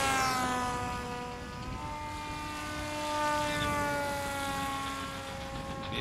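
Electric motor and propeller of a HobbyKing Super G RC autogyro in flight, making a steady pitched whine. The whine drops sharply in pitch right at the start, rises again about two seconds in, then slowly eases down.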